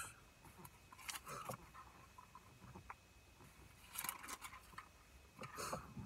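Faint paper rustling in three brief bursts, about a second in, about four seconds in and just before the end, as pages of a Bible are leafed through to find a verse.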